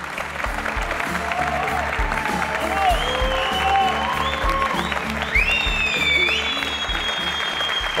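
Studio audience applauding steadily over upbeat music with a regular beat.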